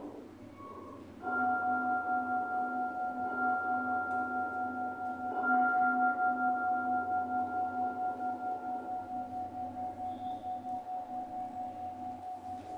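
A large struck bell rung at the elevation of the chalice during the consecration. It is struck about a second in and again about five seconds in, and each stroke rings on long with a slow pulsing beat, fading toward the end.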